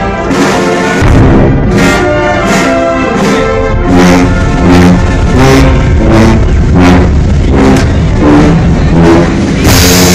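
Guatemalan procession brass band playing a slow funeral march: sustained low brass and trombone chords over percussion strokes on a slow, even beat.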